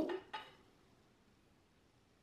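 A voice trails off in the first half-second, then near silence: quiet room tone.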